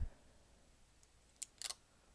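Faint handling noise: fingers on the small plastic Apple TV and its protective film, giving two or three short scratchy rustles near the end.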